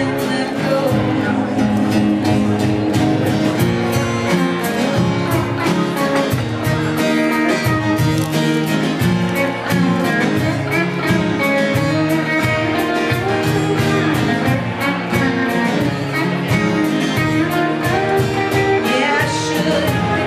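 Live band playing a country song, with guitar and a drum kit.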